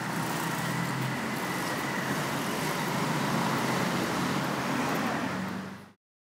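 Steady city street traffic noise from passing cars, swelling slightly midway and cutting off abruptly just before the end.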